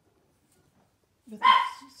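A small dog barking once, a short high-pitched bark about a second and a half in.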